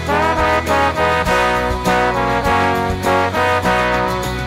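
Three trombone parts playing a melody in harmony, one sliding up into its note right at the start, over a backing track with a steady low bass line and regular percussion hits.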